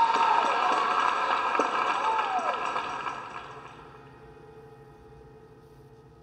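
Drum kit's cymbals and the song's closing chord ringing out after the final drum hits, fading away over about four seconds until only a faint hum is left.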